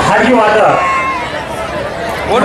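Speech: a man's voice talking, with crowd chatter underneath.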